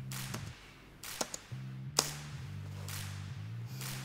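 A handful of sharp, separate keystrokes on a computer keyboard as a password is typed, the loudest about two seconds in. They sit over soft, sustained background music.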